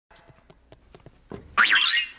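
A loud comic sound effect about one and a half seconds in, its pitch wobbling up and down like a spring boing, after a second or so of faint scattered ticks.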